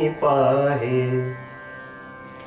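A man singing one long phrase of a Marathi devotional abhang, his pitch stepping down midway. The voice stops about one and a half seconds in, leaving a faint steady drone underneath.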